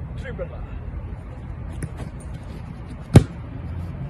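A football struck once with a sharp, loud thud about three seconds in, over a steady low background rumble.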